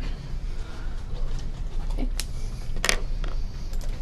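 Steady low hum of room and microphone noise in a small room. A soft spoken "okay" comes about two seconds in, and two short sharp clicks follow, the louder one just before three seconds.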